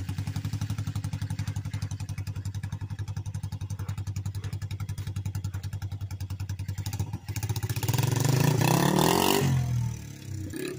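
Honda TRX90 four-stroke single-cylinder engine in a small pit bike, idling with an even putter just after being started, then revving up about seven and a half seconds in as the bike pulls away, the sound dropping off near the end.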